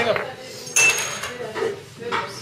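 A glass laboratory flask clinks once, about three quarters of a second in, with a short bright ring that fades quickly.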